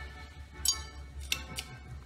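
A few sharp clicks as a bridge lamp's switch is turned and the lamp comes on, over faint background music.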